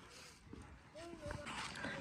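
Faint outdoor street ambience: distant voices and a few light clicks and taps.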